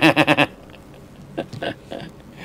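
A man's quick, pulsing giggle that stops about half a second in, followed by two short clicks about a second and a half in.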